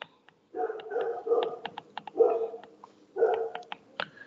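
Sharp stylus clicks and taps on a tablet's glass screen during handwriting, over a run of about six short bark-like bursts.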